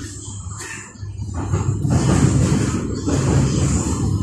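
Inside a moving MTR East Rail line electric train: the rumble and rushing noise of the train running on the track. It swells about a second in and stays loud.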